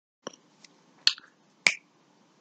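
A few sharp finger snaps: a lighter one near the start, then two louder snaps a little over half a second apart in the second half.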